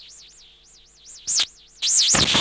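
A high electronic warble sweeping up and down about three times a second, interrupted by a short loud rushing burst about a second and a quarter in and another starting just before the end.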